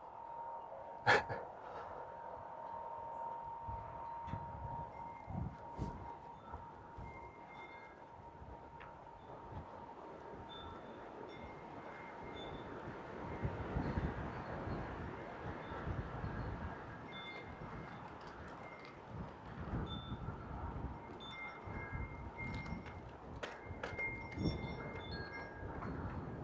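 Faint wind chime ringing. One long note dies away over the first few seconds, then short notes at the same few pitches sound now and then, over a low rumble.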